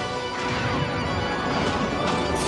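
Dramatic cartoon score, loud and dense, mixed with the rumble and crash of thunder over a stormy scene.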